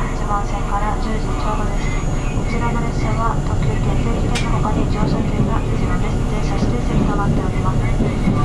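Running noise of a JR 651-series electric train heard inside the passenger car: a steady low rumble of wheels on rail that grows a little louder about four seconds in as the train runs into the covered station approach, with a single sharp click about four and a half seconds in.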